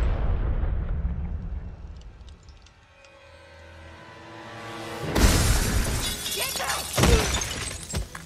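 Film sound effects under a sustained music score. A loud hit fades away under held chords, then a rising rush leads to glass shattering about five seconds in, with a second heavy crash near seven seconds as a body lands on the broken glass floor.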